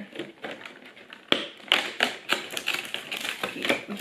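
A cardboard advent calendar door being pried open by fingers: a rapid, irregular run of sharp clicks and snaps of card, loudest a little past the first second.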